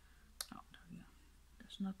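A single sharp click about half a second in, then a woman's voice starting to speak near the end.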